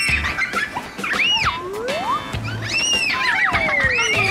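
Upbeat background music with a steady low beat, overlaid with sliding, whistle-like tones that rise and fall several times.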